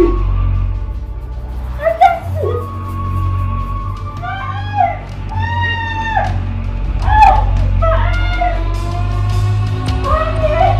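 A woman wailing and crying out in distress, several long, drawn-out cries over a steady background music score.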